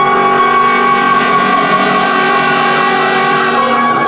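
Live free-improvised ensemble music: a dense cluster of long, steady held tones at many pitches.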